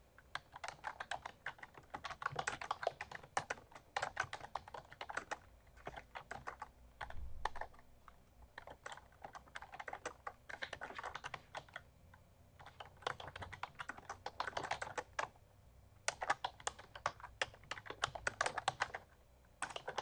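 Typing on a computer keyboard: runs of rapid keystrokes broken by brief pauses.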